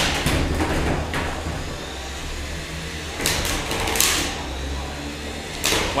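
3 lb combat robots colliding in the arena: Ti's weapon striking Fallout with a handful of sharp metallic hits over a steady low hum, tearing at Fallout's wheels and underside.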